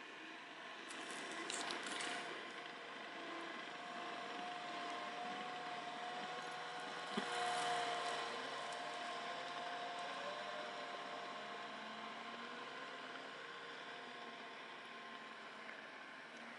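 Caterpillar compact track loader's diesel engine running steadily while it grades gravel. It grows louder as the machine comes close about halfway through and fades as it pulls away, with a single knock about seven seconds in.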